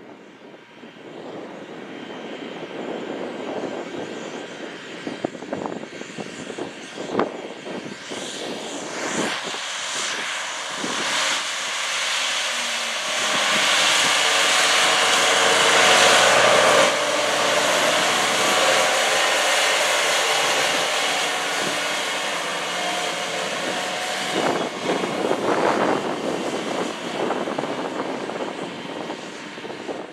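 Engine of a John Deere 4630 self-propelled sprayer running steadily as it drives through the field spraying, growing louder as it passes close around the middle and then fading as it moves away.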